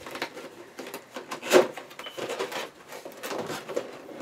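Cardboard toy box being handled and opened: rustling and light clicks and knocks, with one louder knock about one and a half seconds in.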